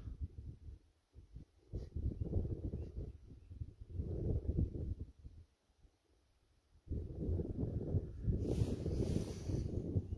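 Wind buffeting the microphone in gusts, a low rumble that comes and goes with two short lulls, then blows more steadily over the last three seconds.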